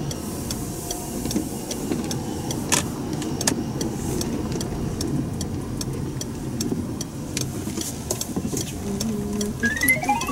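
Steady road and engine noise inside a small car's cabin while driving, with a regular series of faint light clicks. Just before the end a rising run of bright electronic notes begins.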